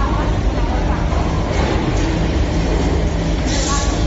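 Steady, loud low mechanical rumble, like running machinery, with faint voices behind it.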